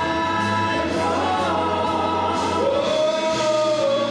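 Gospel singing by amplified singers on microphones, holding long notes over a steady beat.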